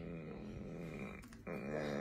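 A man's voice, continuous apart from a short break about one and a half seconds in.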